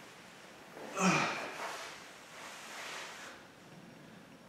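A man's short breathy exhale or snort about a second in, followed by fainter rustling as he shifts while lying on the floor.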